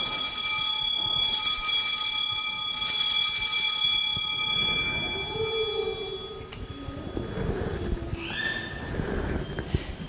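Altar bells rung at the elevation of the consecrated host, ringing with many bright partials and fading away over about five seconds.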